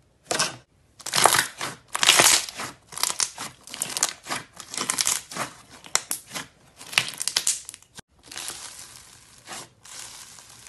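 Hands squeezing and kneading a large mass of clear slime full of crunchy bits, giving repeated bursts of crackling and popping with each squeeze. About eight seconds in the sound cuts off abruptly and gives way to a softer, steadier crackle.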